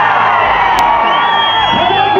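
A large crowd of fans cheering and whooping in a cinema hall, many voices shouting over each other. A long, steady high note is held above the cheering from about halfway through.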